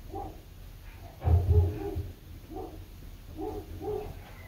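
Neighbour's dogs barking repeatedly: a string of short barks about every half second, with a louder burst about a second and a half in.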